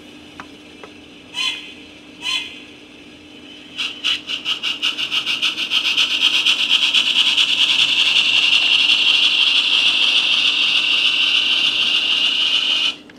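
On30 model steam train pulling away: two short tones, then from about four seconds in a fast rhythmic rasping that quickens as the train gets under way and then runs steadily, over a faint steady hum.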